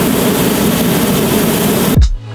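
Hot air balloon's propane burner firing in one long, continuous blast, a loud steady rush of flame.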